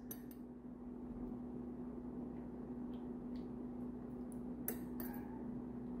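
Quiet room with a steady low hum. A couple of faint clinks come near the end, from a metal spoon against a glass cup as cooking oil is poured into the spoon.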